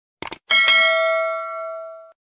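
Subscribe-animation sound effect: two quick clicks, then a bright bell ding that rings on and slowly fades.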